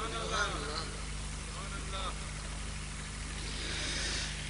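Quiet lull with faint murmured voices in the first half, over a steady low hum and faint hiss.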